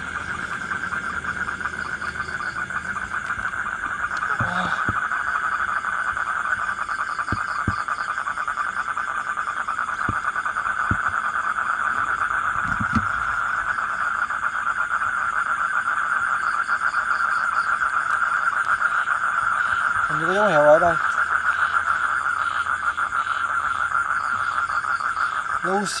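Night chorus of insects and frogs: a steady, dense high trill with a faster pulsing chirp above it, going on without a break.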